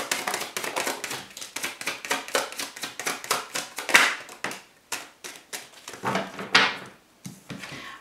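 Deck of tarot cards shuffled by hand: a quick, uneven run of light card clicks and flicks, with a louder swish about halfway through and another near the end.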